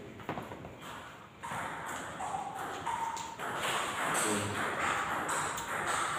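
Table tennis ball knocking: short hollow plastic clicks as it is tapped on rackets and bounces on the table.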